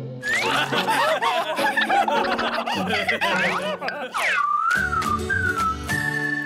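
Several cartoon characters giggling and laughing together over background music, then a whistle-like tone that swoops down and wavers near the end.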